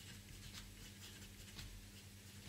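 Pen scratching on paper as a word is handwritten: a faint run of short, irregular strokes.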